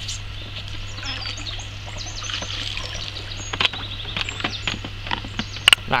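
Small birds chirping and calling over a steady low hum, with a few sharp knocks, the loudest just before the end.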